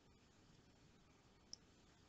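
Near silence: faint room tone with a single faint click about one and a half seconds in.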